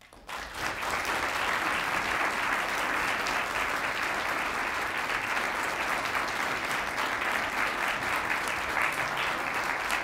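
Audience applauding steadily, swelling up in the first second after the introduction ends.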